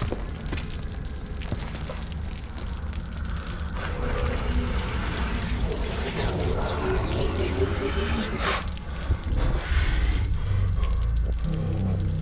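Horror-film soundtrack: a steady, low, rumbling drone with scattered small clinks and wet sounds of broken glass jars and spilled liquid. A sharper hit comes about eight and a half seconds in.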